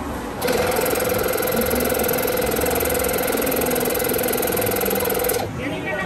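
Electric balloon air pump switching on about half a second in, running steadily with a fast, even buzzing hum, and cutting off about a second before the end. It is inflating a clear bubble balloon with smaller balloons stuffed inside.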